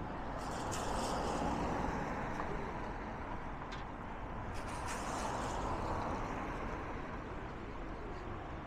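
Road traffic going past on a seafront road, a steady rush of engine and tyre noise that grows louder twice, about a second in and again around five to six seconds in, as vehicles pass.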